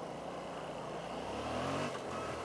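Yamaha FZ-07's parallel-twin engine pulling away in first gear, its pitch rising over the last half second as it revs up.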